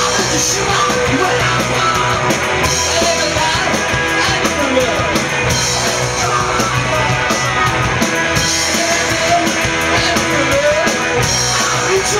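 Live rock band playing on stage: electric guitar and drum kit driving a fast song, with a man singing into the microphone over them.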